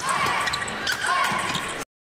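Badminton rally: sharp racket strikes on the shuttlecock and short squeaks of shoes on the court, cutting off suddenly just before the end.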